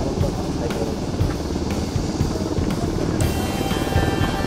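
UH-60 Black Hawk helicopters flying over in formation: a steady, heavy low rotor noise from several aircraft.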